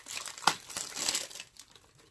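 A plastic snack wrapper crinkling as it is worked open by hand, with a sharp crackle about half a second in. The crinkling dies down after about a second and a half.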